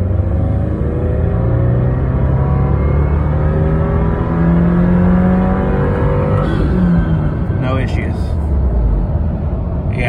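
2022 Subaru WRX's turbocharged flat-four, fitted with an ETS intake and running the stock factory map, under full throttle in third gear, heard from inside the cabin. The revs climb steadily for about six seconds, from about 2,600 to over 5,600 rpm, at about 13 psi of boost. Then they fall away as the throttle is lifted.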